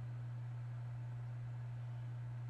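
Background noise only: a steady low electrical hum with a faint hiss.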